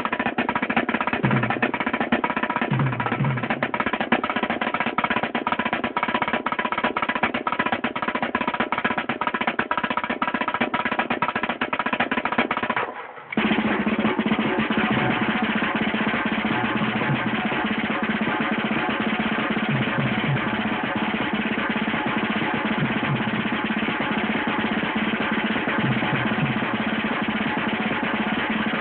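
Marching snare drums played with sticks in fast, continuous rolls and rudiment patterns, a drum battle between two snare drummers. The drumming cuts out for a moment about halfway through, then carries on just as dense.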